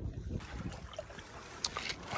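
Low, uneven rumble of wind on the microphone, with faint footsteps on sand and pebbles and a single short click about three-quarters of the way in.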